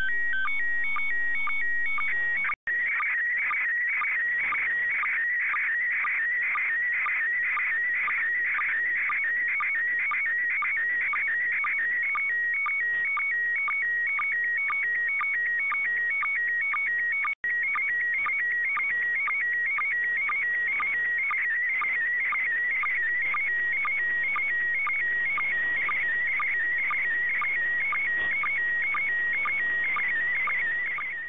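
Slow-scan TV (SSTV) image signal from the International Space Station, received in FM through a WebSDR: a steady warbling whistle of tones around 2 kHz that chirps in a fast, even rhythm, scan line by scan line. It drops out briefly twice, about two and a half seconds in and again past the middle.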